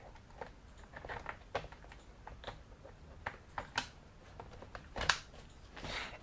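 Faint plastic clicks and knocks as a removable battery is pushed into an HP laptop's battery bay and the laptop is handled on a table. The clicks are scattered, and the loudest knock comes about five seconds in.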